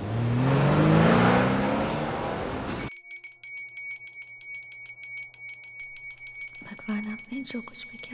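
A Ferrari's engine revving as the car accelerates, its pitch climbing, for the first three seconds. It cuts off sharply into a temple hand bell rung rapidly and steadily for aarti, with a voice murmuring over the ringing near the end.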